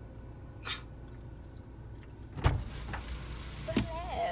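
A car door latch clicks open sharply about two and a half seconds in, followed by rustling and a second knock as a person climbs into the passenger seat holding a rolled yoga mat. A low steady hum from the car runs underneath.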